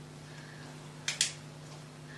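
Spring-loaded blood lancing device firing against a dog's lip: one short, sharp double click about a second in, the prick that draws a blood drop for a glucose test.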